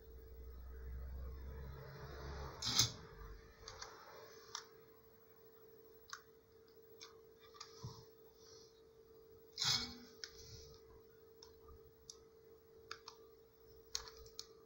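Small clicks and light knocks of wires and a crystal radio board being handled, with a low rumble during the first few seconds and two louder knocks, about three and ten seconds in.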